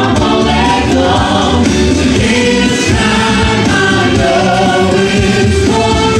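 Live pop music played loud and steady over a PA system: a group of singers singing together into microphones, with instrumental accompaniment and bass underneath.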